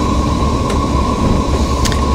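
Irizar i6 coach under way, heard from the driver's seat: a steady low engine and road rumble with a faint steady whine, and two light clicks.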